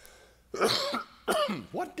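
A man coughs and clears his throat into his hand about half a second in, a short loud rough burst. It is from a cold he says he is suffering with.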